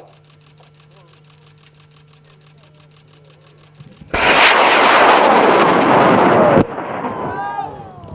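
High-power rocket motor igniting about four seconds in: a sudden loud roar of exhaust lasting about two and a half seconds, which cuts off abruptly and leaves a fading rumble. The abrupt end goes with a violent in-flight failure that breaks the rocket into pieces.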